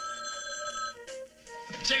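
Telephone bell ringing, one ring about a second long that stops about a second in, over background music.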